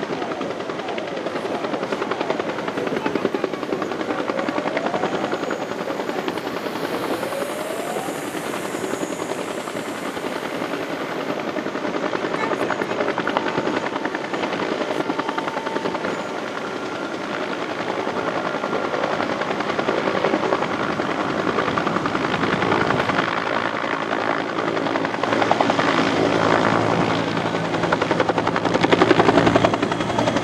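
Military helicopter with a two-blade main rotor hovering low over water, the rotor beating steadily over the engine. It grows louder in the last few seconds as it swings in close.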